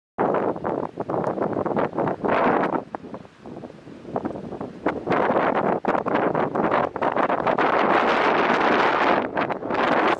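Wind buffeting the camera microphone in gusts, cutting in abruptly just after the start, easing briefly about three to four seconds in, then loud again.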